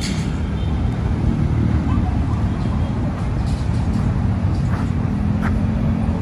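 Steady low rumble of outdoor city noise, with faint distant voices.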